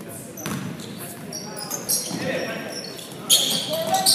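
A basketball being dribbled on a hardwood gym floor, with sneakers squeaking in short high chirps and players' voices.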